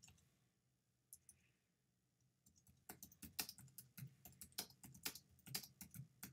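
Faint computer keyboard keystrokes typing a short phrase: a couple of isolated clicks at first, then a quick run of typing from about halfway through.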